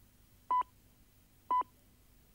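Two short, high-pitched pips one second apart from the British speaking clock: the timing strokes that mark the exact second, heard over a line with a faint steady hum beneath.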